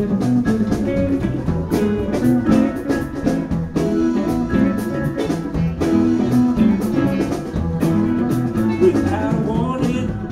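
Live band playing, with electric guitars over a steady drum beat.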